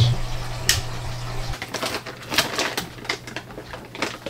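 Irregular light clicks and taps of handling around aquarium tanks and their fixtures, over the low steady hum of aquarium equipment. Part of the hum drops away about one and a half seconds in.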